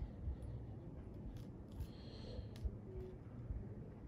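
A few faint, light clicks and rustles as the tip of a magnetised nail is dabbed among small metal staples on a sheet of paper, over quiet room hum.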